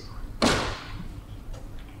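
A single short scuffing thump from a handheld microphone being handled as it is passed on, about half a second in, over faint room tone.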